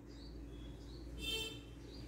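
Faint high bird-like chirps repeating about twice a second, with one louder, brighter chirp a little past halfway, over a low steady hum.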